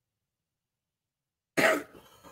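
Silence, then about one and a half seconds in, a person briefly clears their throat.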